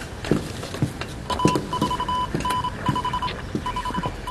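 Morse code from a radio telegraph set: one high beep keyed on and off in short and long pulses, with a few soft knocks underneath.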